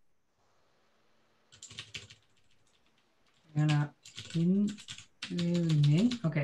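A quick burst of typing on a computer keyboard, faint clicky keystrokes about one and a half seconds in that last about a second. A man starts speaking about halfway through.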